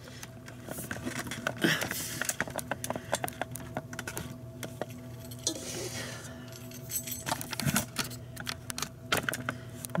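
Irregular small clicks, clinks and knocks of kitchen things being handled, over a steady low hum.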